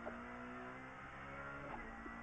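Faint engine note of an Opel Adam R2 rally car's four-cylinder engine under load, heard from inside the cabin, with a steady pitch and a shift in tone near the end as the driver changes up from second to third gear.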